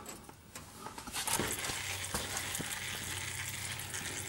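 Gear oil trickling out from the gap under the pried-loose rear differential cover of a Jeep Liberty: a faint steady trickle that starts about a second in, with a few light ticks.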